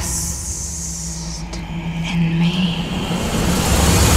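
Low, steady sustained drone from a film trailer's sound design, with a soft high hiss over the first second and a half.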